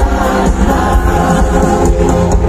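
Loud live band music through a concert PA, with strings, guitars and brass under a group of voices singing together like a choir.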